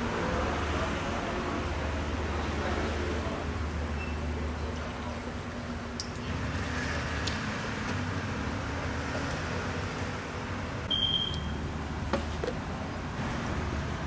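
Tap water running from a push tap into a stainless steel sink and over a sponge held in the stream, as a steady splashing hiss with a low hum under it. A few sharp clicks, and a short high beep late on.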